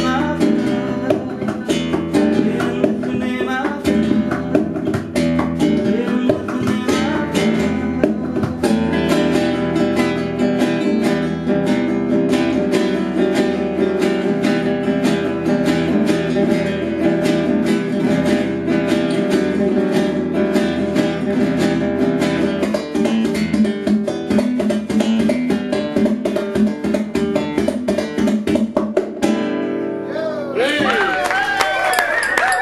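Acoustic guitar played flat across the lap, instrumental, with fast percussive strikes over ringing chords and notes. The piece stops abruptly near the end.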